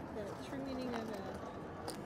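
Indistinct background voices of people talking at the table, with one short sharp click near the end.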